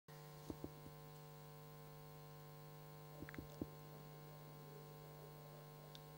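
Near silence: a faint steady electrical hum, with a few faint clicks.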